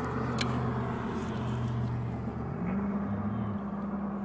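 A motor's steady low hum that steps up in pitch about two and a half seconds in, with one faint click near the start.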